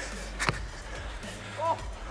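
A single sharp thud of a football impact about half a second in, over faint background music, with a brief shout near the end.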